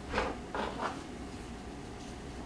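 Light rustling and clicking of car-stereo wiring-harness wires and plastic connectors being handled: a few short scrapes in the first second, then a faint steady room background.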